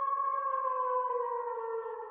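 Closing synth tone of the outro music: one held note with a few overtones, sliding slowly down in pitch and starting to fade near the end.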